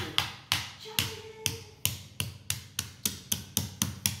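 A wooden mallet tapping repeatedly on a large block of clear ice: about a dozen sharp knocks that quicken from about two to about four a second.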